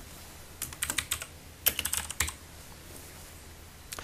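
Computer keyboard typing: two short bursts of keystrokes, then one more click near the end.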